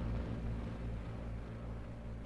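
Low, steady engine drone, easing off slightly toward the end.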